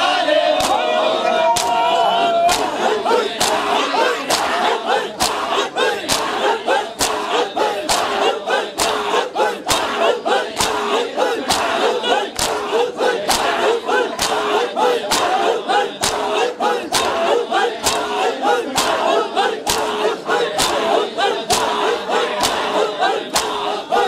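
A large crowd of men doing matam, their open hands slapping their bare chests together in a steady beat of about two strikes a second, while the crowd chants and calls out in unison.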